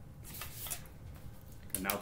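Pencil lead scratching along the edge of a plastic set square on drawing paper, a short stroke about half a second in.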